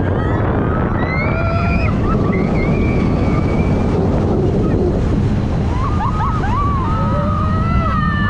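Steady rush of wind buffeting the microphone on a moving steel roller coaster, with riders screaming and yelling over it about a second in and again near the end.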